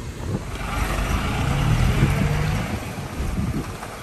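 A car driving along a road: steady road and engine noise with some wind, and a faint low engine tone about halfway through.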